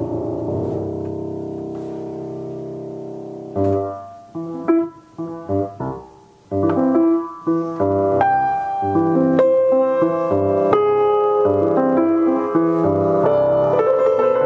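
Solo piano improvisation. A held low chord rings and fades over the first few seconds, then a few short chords are struck with pauses between them, and from about halfway a continuous flowing passage with notes reaching into the treble.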